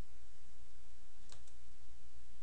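Low steady hum and hiss of the recording setup, with two faint sharp clicks close together about a second and a half in.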